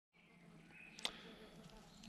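Near silence: faint outdoor ambience with a single sharp click about a second in.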